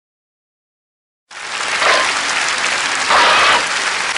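Silence, then audience applause cutting in abruptly about a second in and carrying on loudly.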